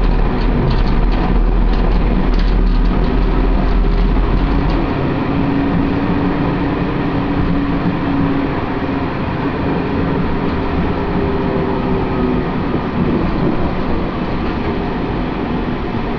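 A 2011 Siemens Combino Classic low-floor tram heard from inside the passenger cabin while running: a steady rolling rumble of the car on the rails, with a few light clicks in the first seconds. The deep rumble eases about five seconds in, and a low steady hum runs through the middle.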